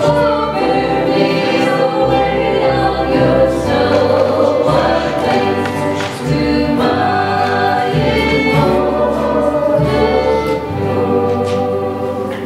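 An acoustic string band playing a song in bluegrass style: two women singing together over fiddle, acoustic guitar, five-string banjo and upright bass, with the bass walking through steady low notes.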